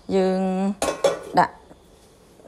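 Metal spatula stirring a chopped filling in a wok, with a few sharp clinks and scrapes of metal on the pan about a second in.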